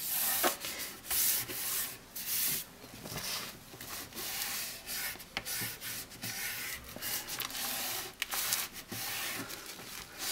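A hand and a cloth rubbing over freshly glued paper, smoothing it flat onto the album cover in a run of irregular brushing strokes.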